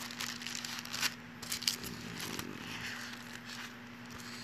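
Irregular rustling and crackling with scattered sharp clicks, over a steady low electrical hum.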